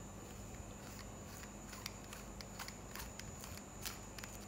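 Faint scattered clicks and light rubbing from fingers handling a metal-grille handheld microphone, with the strongest click near the end, over a faint steady hum.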